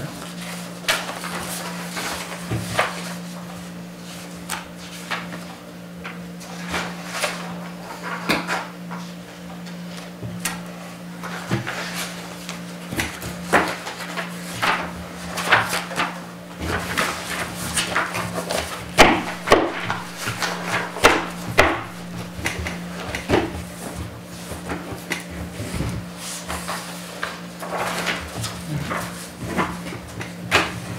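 Sheets of paper rustling and being shuffled on a table, with light knocks and pen taps as documents are handled and signed, loudest around the middle. A steady low hum runs underneath.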